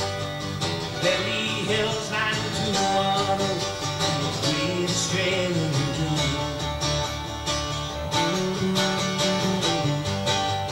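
Live country band music, with guitar and other plucked strings prominent, playing steadily in a bluegrass-tinged style.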